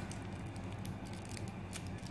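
Faint handling sounds of wrapped toffees being arranged by hand on a foam craft piece: a few light clicks and rustles of the wrappers over a steady low hum.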